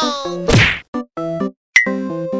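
Edited comedy sound effects over stop-start background music: a loud whoosh-and-whack about half a second in, then a sharp hit with a brief high ring near the end.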